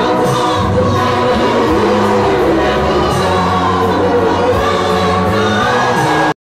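Gospel choir singing a song in isiZulu live, several voices together with microphones, over a steady beat.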